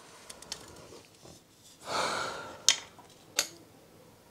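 A heavy sigh about halfway through, then two sharp clicks as the teleprompter's metal frame and glass are handled.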